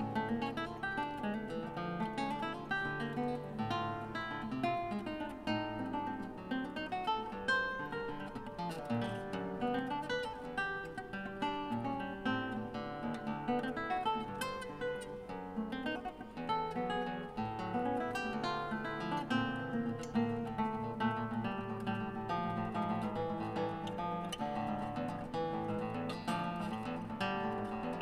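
Solo nylon-string classical guitar played fingerstyle, a continuous run of plucked notes and chords with a bass line underneath, ringing in a large church.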